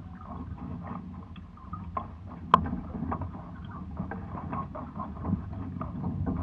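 Water lapping and splashing against the hulls of a Hobie 16 catamaran sailing slowly in light wind, with scattered small knocks and one sharp click about two and a half seconds in.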